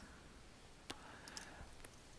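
Near silence with a faint computer mouse click about a second in, followed by a few fainter ticks.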